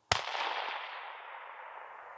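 A single shot from a .222 rifle: one sharp crack just after the start, then a long echo rolling back from the forest and fading away over about two seconds.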